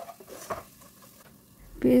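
Wooden spatula stirring a thick, cooked-down tomato-onion masala paste in a nonstick pot: faint soft scrapes with a light sizzle from the paste, which is cooked down and ready.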